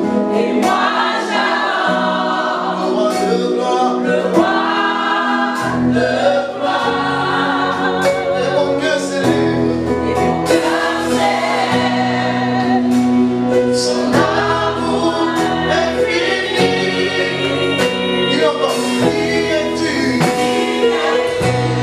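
Live gospel praise song: a man singing over a Yamaha PSR-S775 keyboard accompaniment, a low bass part coming in about six seconds in.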